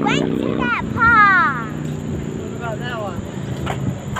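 A child's wordless high-pitched vocal sounds: a loud squeal that glides down in pitch about a second in, then shorter calls near the three-second mark.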